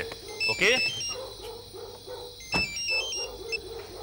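Mobile phone ringing: a short melody of quick stepped electronic beeps, heard twice.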